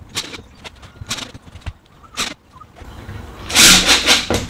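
A cordless drill driving a screw into the roof vent's trim ring in one short burst about three and a half seconds in, after a few light clicks and knocks of the drill and trim being handled.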